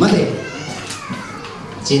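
A man's amplified speech breaks off. In the pause, faint voices of children sound in the hall, and then he speaks again near the end.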